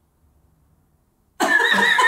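Near silence, then about a second and a half in, men burst out laughing loudly, starting with a high, wavering laugh.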